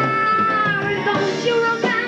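Live band music with a singer holding a long high note for about a second before it bends down, and a sharp drum hit near the end.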